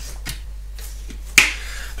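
Plastic shaker bottle being handled, with a few light clicks and then one sharp click about a second and a half in as its snap-on lid is closed.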